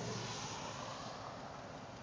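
Kia Rondo's 2.7-litre V6 running at a rough low idle, heard from behind the car as a steady rushing noise that fades slightly; the engine is barely running at about 500 rpm and shaking, with the check engine light flashing.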